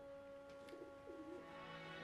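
Faint pigeons cooing, a few soft repeated coos, under a steady held background-music tone.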